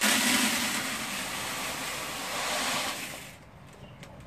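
Dry instant white rice pouring from its cardboard box into a plastic bucket: a steady rushing hiss that starts suddenly and trails off after about three seconds.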